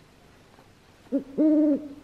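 A man's voice making level, hooting hums: a short one just over a second in, then a longer held note at the same pitch.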